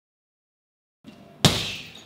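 After about a second of silence, one hard kick lands on a hanging heavy punching bag: a single sharp smack with a short ringing tail.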